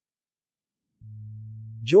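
Dead silence for about a second, then a steady, unwavering low tone from the text-to-speech voice. It runs straight into the synthesized male narration as it resumes at the very end.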